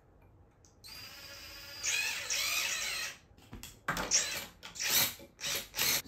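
DeWalt cordless drill/driver motor whirring as it drives a screw into the lamp's metal ring. It runs softly for about a second, then louder with its pitch wavering for about another second. Several sharp knocks and clicks of handling follow in the second half.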